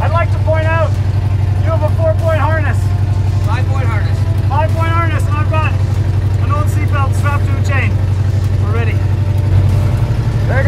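Demolition derby truck's engine idling, a steady low rumble heard from inside the cab, with a man talking over it.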